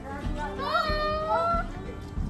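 A child's high voice calling out in one long, slightly rising note lasting about a second, amid children playing.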